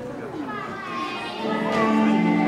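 Children's and spectators' voices echo around a gymnasium. About a second and a half in, the gymnast's floor-exercise music starts over the speakers, with sustained notes.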